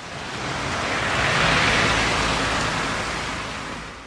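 A rushing noise that swells to its loudest about halfway through, then fades away.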